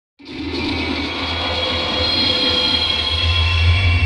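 Dark droning intro to a hip-hop track: a low rumbling hum under a haze of sustained high, ringing tones. It comes in just after the start and holds steady.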